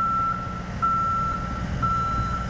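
Motion alarm of a boom lift beeping: long, even beeps of one pitch, about one a second, over a low engine rumble.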